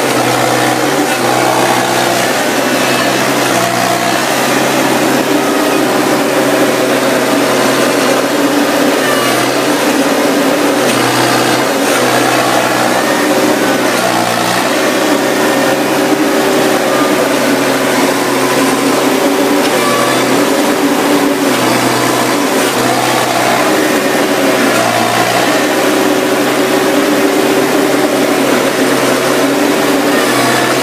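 Harvester engine running steadily, its pitch dipping briefly and recovering every few seconds.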